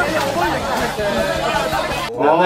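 Several men's voices talking over one another: group chatter at a drinking party.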